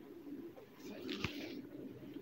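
Pigeons cooing low and steadily in the background, with a brief rustle and a sharp knock about a second in.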